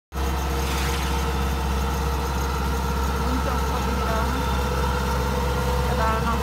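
Kubota DC-105X rice combine harvester's diesel engine running steadily, a constant hum over a strong low drone, as the tracked machine crawls through deep paddy mud.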